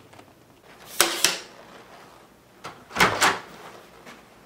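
Two short clattering knocks about two seconds apart, each a quick double clack of hard plastic: an upright vacuum cleaner's hose wand being pulled from its clip and handled.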